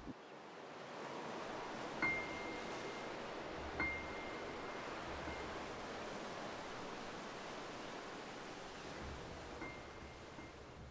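A soft, steady rushing like ocean surf fades in and holds, with a single high grand-piano note struck twice, about two seconds apart, each ringing on briefly.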